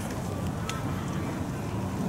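Steady low background rumble outdoors, with a faint tick about two-thirds of a second in.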